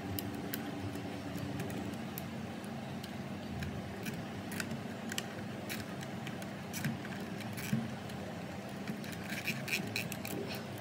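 Scattered small clicks and rustles of hands working a cable and a plastic cable tie against the sheet-metal chassis of a car radio head unit, with a quicker run of clicks near the end, over a steady low hum.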